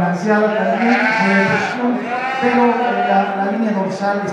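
Dorper sheep bleating, long wavering calls following one another with short gaps.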